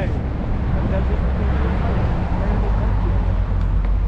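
Wind rushing over the microphone of a phone held out of a moving SUV's window, over a steady low rumble of engine and road.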